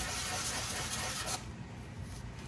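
A small wooden segment rubbed by hand on a sandpaper disc laid flat, lightly scuffing its cured resin seal coat to dull it so the glue-up resin will adhere. The sanding stops suddenly about one and a half seconds in.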